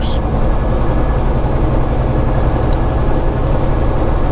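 Peterbilt semi-truck cruising at highway speed: a steady low drone of diesel engine and tyre noise on the road.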